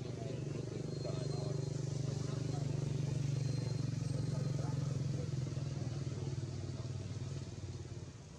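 A small engine running steadily off-screen, fading away near the end.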